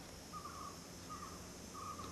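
A bird calling faintly in the background during a pause, three short notes at the same pitch, evenly spaced about three-quarters of a second apart.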